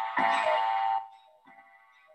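A short electronic alert chime: a steady, multi-toned beep lasting under a second, then cutting off.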